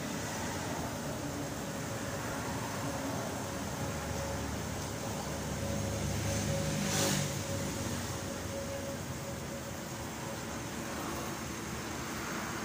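Steady street traffic noise, with a vehicle passing about seven seconds in as the loudest moment.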